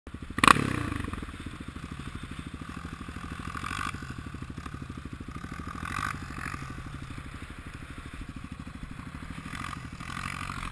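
Quad bike engine idling with a steady, even pulse, and a single sharp knock about half a second in.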